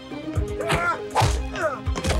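Film fight sound effects, punches and whacks landing, over background action music.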